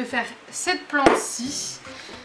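A small terracotta flowerpot set down on a tabletop, with one sharp knock about a second in and a short rustle after it, amid brief soft vocal sounds.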